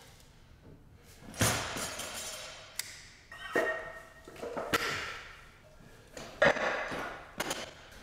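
Loaded barbell and plates hitting the gym floor: about five separate heavy thuds and metallic clanks spread through a few seconds, some with a brief ring.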